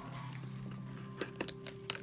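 Light clicks and taps of a cardboard photo gift box being handled, about five in the second half, over a faint steady background tone.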